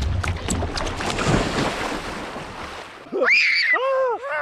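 Water splashing and churning close to the microphone, with many short splashes in quick succession, dying away about three seconds in.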